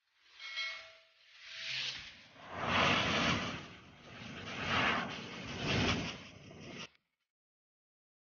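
Compressed air from a Sinotruk HOWO dump truck's air tank, blown through a hose against the cylindrical air cleaner filter element to clear it of dust. It hisses in about five blasts, loudest a few seconds in, and cuts off suddenly near the end.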